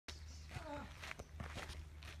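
Footsteps on a dry dirt path, a few faint steps, with a brief faint voice in the background and a steady low rumble underneath.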